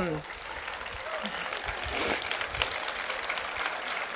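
Large audience applauding: a dense, steady patter of many hands clapping.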